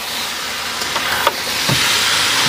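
Mutton pieces sizzling steadily in hot oil in a steel kadhai as they are stirred with a steel spatula, the meat being browned in oil before the spices go in. The sizzling grows a little louder toward the end.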